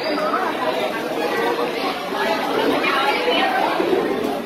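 Group chatter: several people talking over one another at once, with no single voice standing out.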